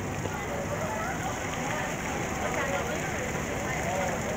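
Indistinct chatter of people talking nearby over a steady outdoor city hum.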